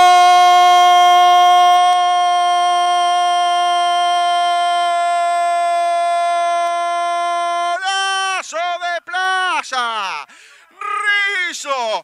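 Radio football commentator's goal cry: a single 'gol' held on one loud, steady note for nearly eight seconds, then breaking into a run of short shouted syllables.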